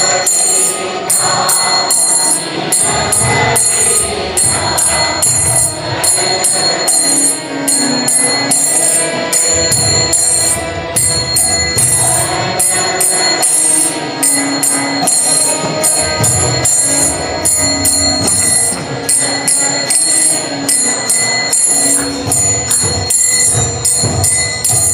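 Small brass hand cymbals (kartals) struck in a steady rhythm, with melodic devotional music under them, in an instrumental break of a kirtan chant.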